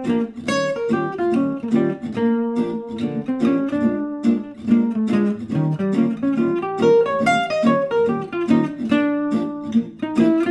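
Archtop jazz guitar playing quick single-note lines and arpeggios through an etude over a B-flat blues progression.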